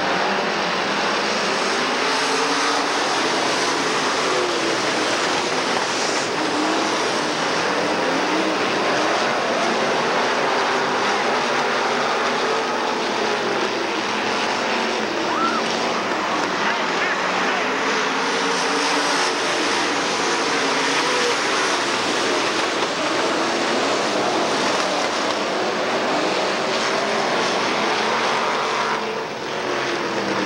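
A field of dirt late model race cars under racing power on a dirt oval: several V8 engines at once, their pitches rising and falling as the cars accelerate, lift and pass by. The sound is loud and continuous throughout.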